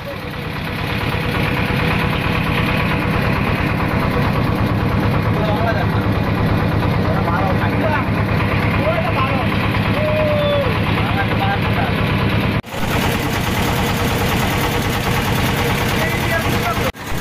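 Engine of a wooden river boat running steadily at an even pitch, with a brief dropout about three-quarters of the way through.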